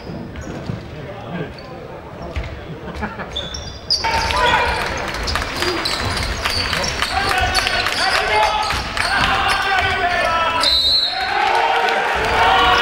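Live basketball game sound in a gym: the ball bouncing on the court among the unclear voices of players and spectators, getting louder about four seconds in.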